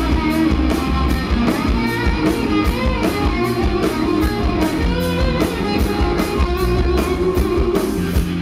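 Live rock band playing: strummed electric guitars over bass and drums with a steady beat.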